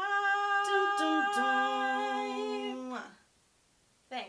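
Two women's voices singing a cappella: one holds a steady note, and a second voice comes in on a lower harmony note about a second in. The two-part chord is held and cut off together about three seconds in.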